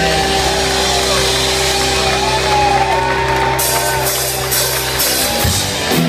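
Live rock band with electric guitars holding one long chord, with voices from the crowd shouting over it; near the end the band comes back in with a beat.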